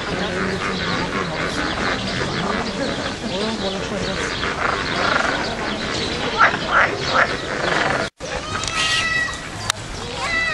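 Many people talking at once, with a few short, loud calls about six to seven seconds in. After a brief dropout just past eight seconds, a mallard quacks near the end.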